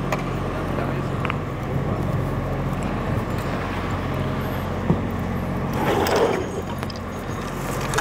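Steady low background hum and rumble, with a single light click a little before five seconds and a brief murmur of a voice around six seconds.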